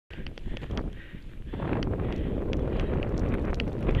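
Wind rushing over the microphone of a camera carried downhill on skis, with the scrape of skis sliding on snow; the rumble grows louder about a second and a half in. Scattered light ticks sound over it.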